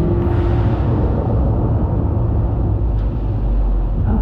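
Show soundtrack played over a theatre's loudspeakers: a loud, deep, steady rumble with no tune or voice.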